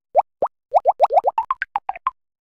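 Cartoon bloop sound effects: two short rising blips, then a quick run of about ten more that sit a little higher in pitch toward the end.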